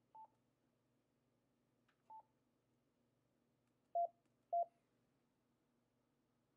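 Yaesu FTM-150RASP mobile transceiver's key beeps as its front-panel buttons are pressed to change the display colour: four short beeps, two faint higher ones about two seconds apart, then two louder, slightly lower ones half a second apart.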